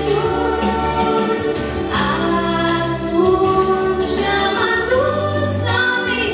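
Two female voices singing a Romanian Christmas carol (colindă) together through microphones, over instrumental accompaniment with held low bass notes and a steady ticking beat.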